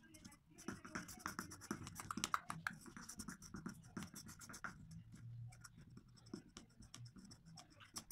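A small tool scraping and crushing pressed eyebrow powder against the inside of a plastic mixing bowl, a quiet, rapid, irregular run of scratches and clicks.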